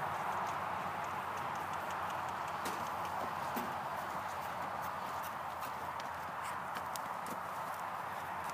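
Hoofbeats of a Percheron gelding trotting in hand on dirt: a run of faint, irregular footfalls over a steady background hiss.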